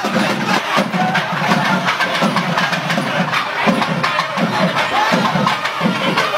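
Percussion music with regular low drum beats and sharp clicking strikes over the noise of a dense, cheering crowd.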